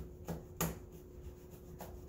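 A three-blade disposable razor scraped up and down over embroidered lettering on a chef jacket, cutting the embroidery threads: a few short, faint scratching strokes, the loudest a little over half a second in.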